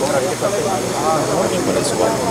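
Indistinct chatter of several people talking at once over a steady rushing background noise.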